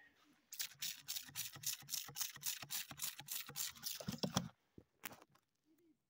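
Rapid squirts of water from a hand spray bottle onto a freshly dug agate rock to rinse it off, about five squirts a second for some four seconds, with one last squirt a little later.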